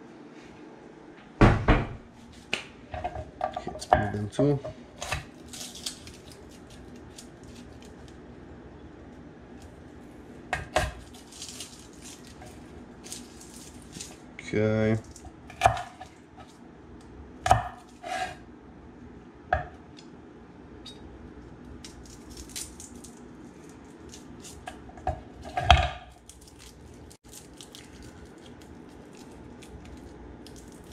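Scattered knocks and clatters of a chef's knife, garlic cloves and kitchenware on a wooden cutting board and counter while garlic is peeled by hand, with light rustling of the papery garlic skins between the knocks.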